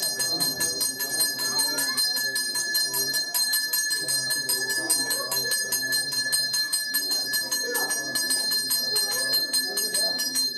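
Temple bell rung in rapid, even strokes during an aarti, its high ringing tones held throughout, with faint voices beneath.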